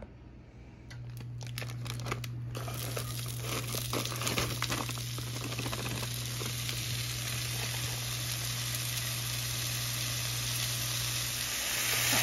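Frozen seasoning blend of diced onion and peppers poured from its plastic bag into a hot cast iron skillet: a few clicks and bag crinkling at first, then a steady sizzle from a couple of seconds in as the frozen vegetables hit the heated pan.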